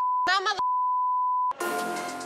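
Censor bleep: a steady high beep dubbed over a woman's swearing, first briefly, then after a fragment of her speech for about a second, cut off sharply. Background music comes in right after.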